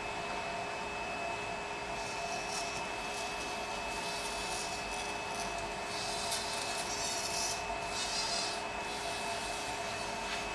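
Small humanoid robot's servo motors whining in short, high-pitched bursts as it shifts its weight and lifts a leg to step up, starting about two seconds in and coming more often in the second half, over a steady background hum.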